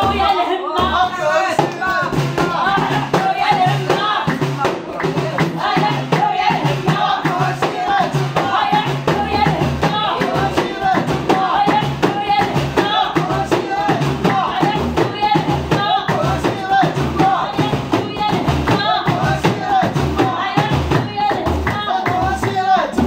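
Group singing with several hand-held frame drums beating a steady rhythm and people clapping along.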